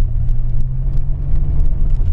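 Cab interior of a 2000 Ford Ranger 4x4 with the 4.0-litre engine, driving at low speed: a steady low engine hum over road rumble.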